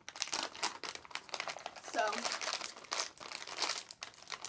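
Plastic snack bag of mini chocolate chip cookies crinkling as it is handled and pulled open, a dense run of quick, irregular crackles and rustles.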